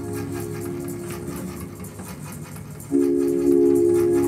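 Electronic music: a held synthesizer chord that dies away just after the start, a quieter stretch over a low hum, then a new held chord that comes in sharply about three seconds in.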